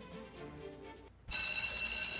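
The recorded opening of a TV theme song: an electric bell starts ringing steadily about a second in, after a near-quiet moment.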